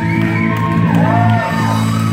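Live Celtic folk-rock band playing an instrumental passage on banjo, acoustic guitar and drum kit, with steady held chords underneath and short rising-and-falling high notes over them.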